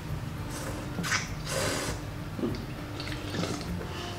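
Slurping and sipping of hot broth and noodles from a self-heating hotpot: a few short wet slurps, the longest about one and a half seconds in.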